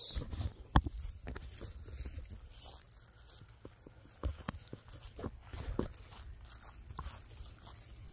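Footsteps through grass and handling noise from a hand-held phone camera, with a low rumble on the microphone. There are scattered irregular knocks, the loudest a single sharp one about a second in.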